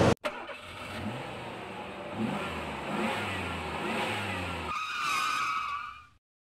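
A motor vehicle engine sound effect: the engine runs and revs up in rising steps. About five seconds in, the engine sound gives way to a higher wavering tone that fades out at the end.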